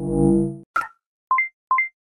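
Channel outro sting: a short synth swell, a sharp click, then two quick chimes that each step up from a lower note to a higher one, like the interface sounds of a subscribe button and notification bell being clicked.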